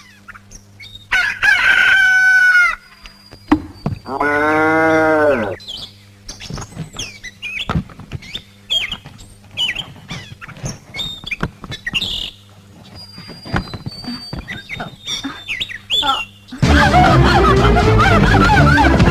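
A rooster crows about a second in, then a cow moos once, followed by a run of short chicken clucks and squawks. Loud film music comes in near the end.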